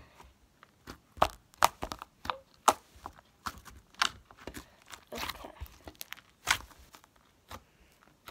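Slime being squeezed and pulled by hand, giving irregular sharp pops and clicks, sometimes several close together.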